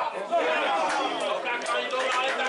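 Several people talking and calling out at once, their voices overlapping into chatter.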